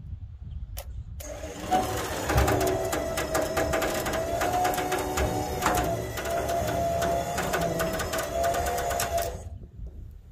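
Electric trailer winch pulling a car up onto a flat-deck trailer by a chain: a steady motor whine with fast clicking, starting about a second in and stopping shortly before the end.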